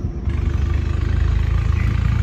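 A motor running steadily with a low hum and a fast, even pulsing, starting about a quarter second in.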